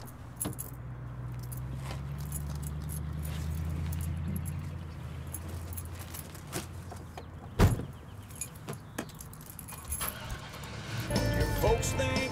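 Pickup truck door and keys being handled: small clicks and jingling over a low steady hum, with one loud thump a little past halfway as the door shuts. Music comes in near the end.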